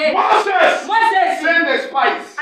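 Loud, continuous preaching speech with no pause.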